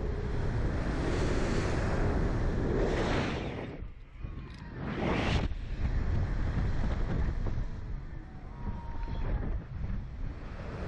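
Wind rushing over the microphone of a camera mounted on a Slingshot reverse-bungee ride capsule as it flies and bounces. The rush comes in surges: loud at first, dropping away about four seconds in, surging again a second later, then easing toward the end.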